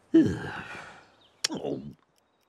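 A man's long sigh with falling pitch, then a sharp click and a second, shorter falling sigh near the end.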